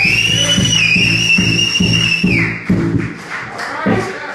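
Blues band with amplified harmonica playing the last bars of a song: the harmonica holds one long, high wailing note that slides up at the start and drops away about two and a half seconds in, over bass and drum hits. The band stops about three seconds in, leaving a last drum hit near the end.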